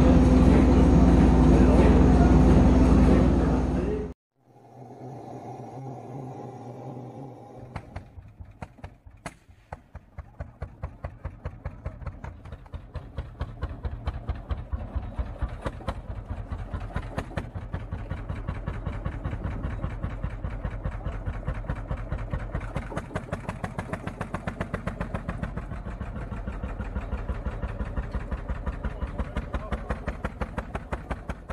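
Loud steady noise with a low hum, cutting off abruptly about four seconds in. From about eight seconds in, an engine-like sound with an even, regular beat of several pulses a second sets in and grows louder.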